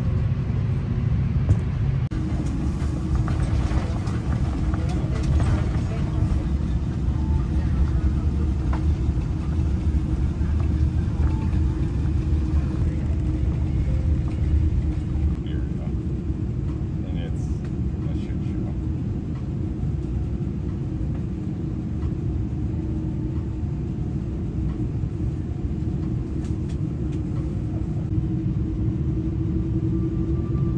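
Airliner cabin noise on the ground: the steady low rumble and hum of an Airbus A330's engines and air systems heard from inside the cabin. The hum rises slightly near the end.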